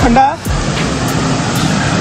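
Steady rushing of a small waterfall pouring into a pool, with water splashing around a person wading in it.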